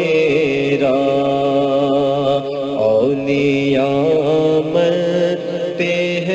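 Devotional vocal chanting of an Urdu manqabat: long, held notes that bend and slide in pitch over a steady lower drone.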